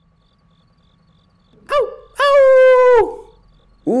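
A wolf howl for the wolf puppet: a short rising-and-falling yelp, then one long, steady howl that drops in pitch as it ends.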